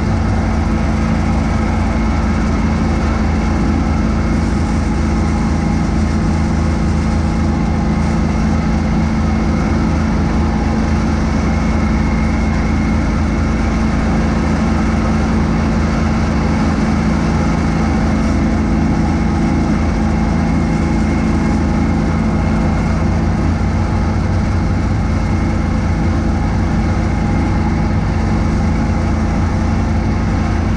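John Deere X585 garden tractor engine running steadily under load, driving a front-mounted snowblower that is throwing snow.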